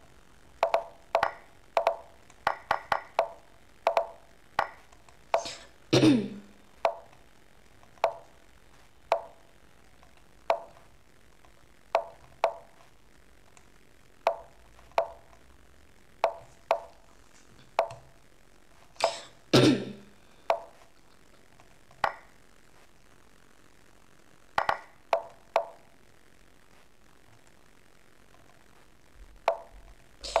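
Lichess.org's move sound effect, a short wooden click for each chess move, coming in quick, irregular succession during a one-minute bullet game. Two louder sounds with a falling pitch come about six and nineteen seconds in, and the clicks stop a few seconds before the end.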